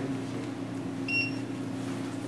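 A single short, high electronic beep about a second in, over a steady low hum in the room.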